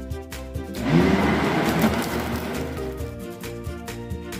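Background music with a steady beat. About a second in, a countertop blender runs for about two seconds, its motor spinning up with a rising whine as it churns the liquid smoothie, then fading back under the music.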